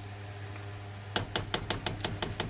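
A silicone ladle stirring thick vegetable soup in an enameled cast-iron pot. About halfway in comes a quick, irregular run of short wet clicks and knocks.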